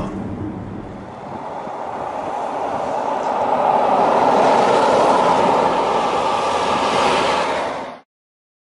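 A 2013 Range Rover driving past on a road, its tyre and engine noise rising over the first few seconds as it approaches, holding, then cutting off abruptly at the end.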